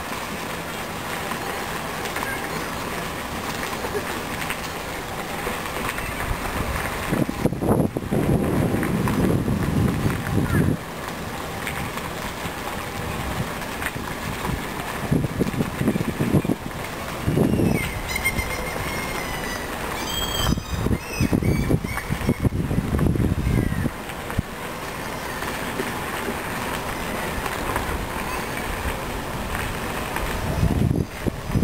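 Outdoor park ambience heard while walking: faint distant voices, with wind gusting on the microphone in several heavy rumbling surges. A few high chirps come about twenty seconds in.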